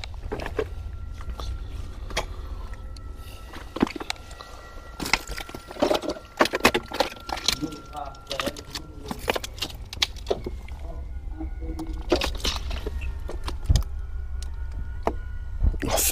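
Footsteps and scattered knocks and clicks on loose debris, over a low rumble of handling noise; a faint steady high tone runs through the first half.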